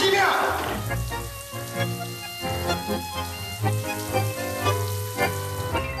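Shower water spraying steadily, under soft background music made of short notes.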